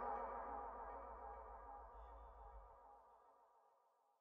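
Layered saxophones holding a final chord that fades steadily away and dies out just before the end.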